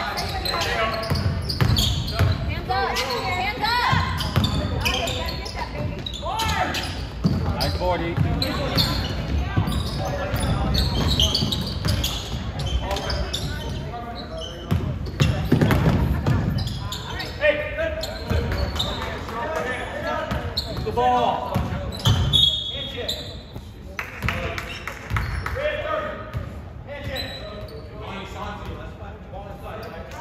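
Basketball game sounds in a gym: a ball bouncing on the hardwood court, with voices of players and spectators calling and talking throughout, echoing in the hall.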